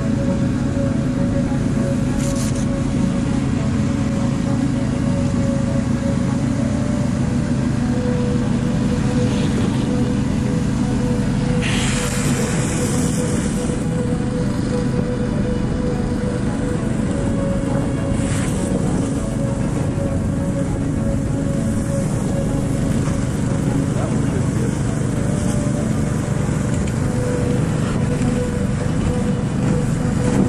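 Motorised snow vehicle's small engine running steadily under way, its pitch easing slightly and picking up again, with brief hissing rushes about twelve and eighteen seconds in.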